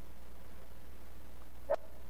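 A pause in speech with a steady low hum on the microphone line, then a short voice sound from the man at the microphone near the end.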